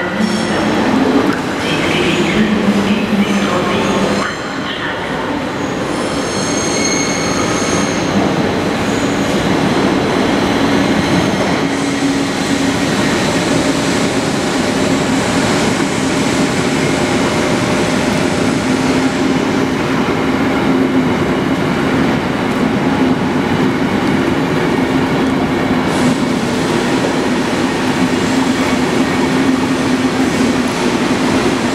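SBB passenger coaches rolling past a station platform, with thin high-pitched wheel squeal during the first several seconds. After that, a steady rumble with a low hum.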